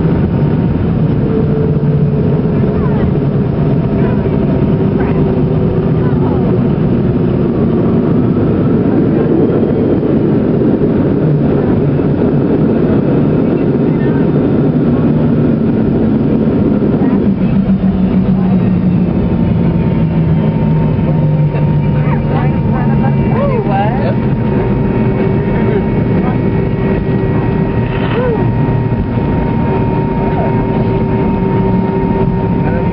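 Cabin noise of a McDonnell Douglas MD-83 rolling out on the runway after landing: a loud, steady rumble from its rear-mounted Pratt & Whitney JT8D engines and the airframe. The engine note falls about halfway through as the engines wind down, and a steady high whine carries on afterwards.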